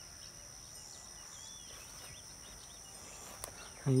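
Quiet outdoor ambience: a steady high-pitched insect drone with a few faint bird chirps in the first half.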